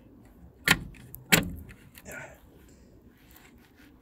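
Plastic wheel trim being pressed onto a car's steel wheel: two sharp knocks about two-thirds of a second apart in the first half, with lighter clicks and ticks around them.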